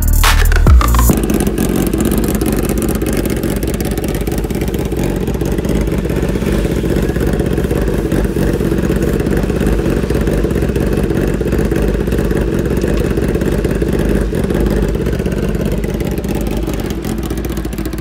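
Kawasaki ZX-10R's inline-four engine running steadily through its aftermarket SC Project CRT exhaust, a loud, even sound with no revving.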